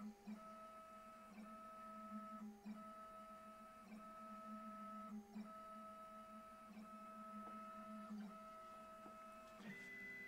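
Desktop CNC router's stepper motors whining faintly at a steady pitch as the Z axis slowly plunges for a drill hole, the tone broken by short pauses about every second. Near the end the whine jumps to a different, higher pitch as the head retracts and moves on.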